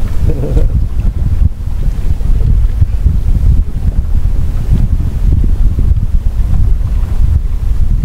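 Wind buffeting the microphone on an open boat: a loud, uneven low rumble that gusts up and down throughout.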